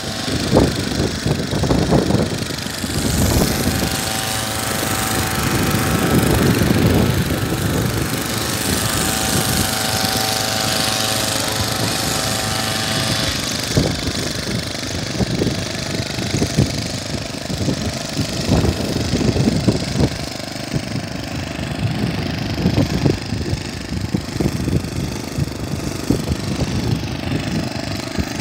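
Small engine-driven bitumen emulsion sprayer running, a steady mechanical drone with the hiss of the hose lance spraying emulsion. A steady whine sounds over it in the first half and cuts off about halfway through.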